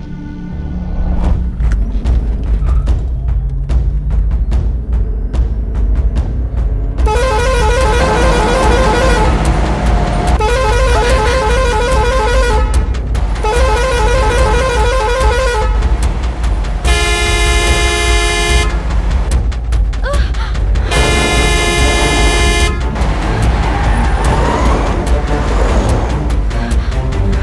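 Truck horns honking in long blasts: three warbling blasts of about two seconds each, then two steady blasts, over a continuous deep rumble.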